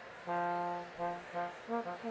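Brass ensemble begins playing: a held chord about a quarter of a second in, then a few short notes and a moving line of notes, over a faint crowd murmur.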